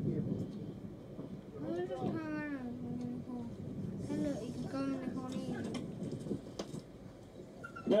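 Drawn-out, wavering shouted calls: one about two seconds in that wavers and then holds steady, and another around the middle, over steady wind or outdoor noise.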